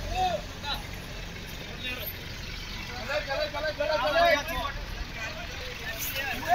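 A Force jeep's diesel engine runs at low speed, a steady low rumble, while several people talk over it, most clearly in the middle of the stretch.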